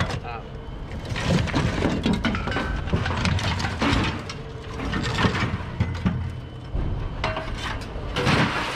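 Scrap metal clanking and scraping as a long rusted pipe is worked loose and pulled out of a load of junk, with repeated knocks and clatters.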